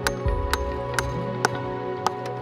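A hammer driving a nail into a cedar deck plank: four sharp blows, about two a second, over steady background music.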